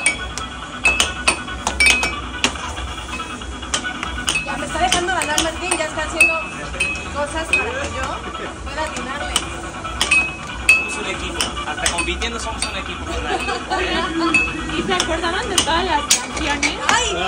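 Air hockey puck being struck back and forth with plastic mallets, with many sharp, irregular clacks as it hits the mallets and the table's rails; some hits leave a brief high ring.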